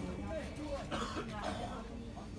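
Indistinct voices talking in the background, with a short rough noise about a second in, like a cough or throat clearing.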